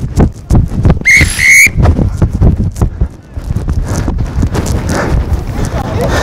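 A referee's pea whistle blown twice in short, shrill blasts about a second in, over a run of quick low thumps. A steadier rumbling noise follows.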